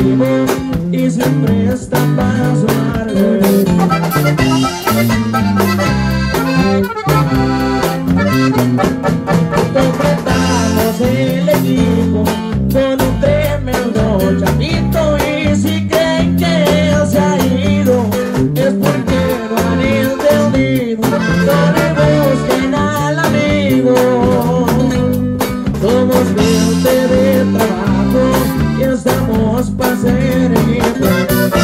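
Live sierreño band music: plucked guitars over a bass line that steps from note to note, with an accordion-like melody.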